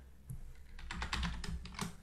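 Typing on a computer keyboard: a run of quick key clicks that becomes denser about a third of the way in.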